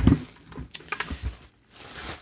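A toaster and its clear plastic wrapping being handled: soft plastic rustling and a few light knocks, the loudest right at the start.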